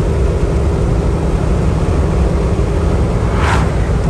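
Steady road and wind noise of a truck driving at highway speed, heard from the cab, with a brief whoosh about three and a half seconds in.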